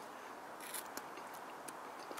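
A person chewing a mouthful of baked pizza, faintly: a few soft crunching clicks over a low steady hiss.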